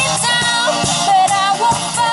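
A live acoustic band: a woman's voice singing a melody over a strummed acoustic guitar, with a steady cajon beat of about two strikes a second.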